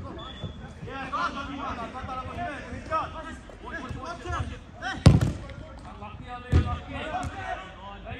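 Two sharp thuds of a football being struck on a five-a-side pitch, about five seconds in and again a second and a half later, with players calling out over them.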